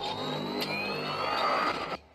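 Sci-fi sound effect of armoured robot drones powering back up: a mechanical whirring rush with a rising whine that climbs steadily, then cuts off at the end.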